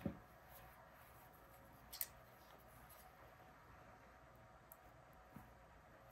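Near silence: room tone, with one light click about two seconds in and a fainter one near the end, as needle-nose pliers are picked up and handled.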